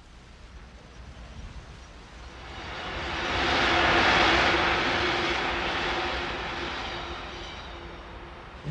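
Electric train passing on an elevated line: a running noise that swells to a peak about four seconds in and then fades away, with a steady low hum beneath it.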